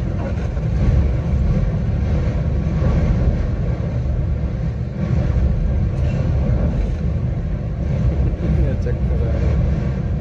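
Film soundtrack playing through cinema speakers: a heavy, steady low rumble of a train in motion, with voices over it.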